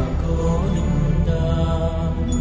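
Devotional chant music: a sustained, chanted vocal line over a steady low drone.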